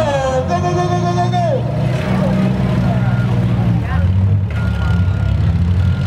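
Engines of compact demolition-derby cars running and revving as a heat gets going, a low drone that shifts pitch about four seconds in. A long drawn-out shout carries over it in the first second and a half.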